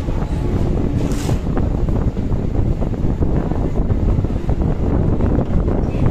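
Running noise of a moving passenger train heard from on board: a loud, steady low rumble with rattling, mixed with wind buffeting the microphone, and a brief hiss about a second in.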